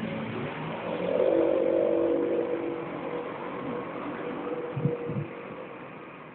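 A motor vehicle's engine, swelling about a second in and fading away over the next two seconds, followed by a couple of short low thumps near the end.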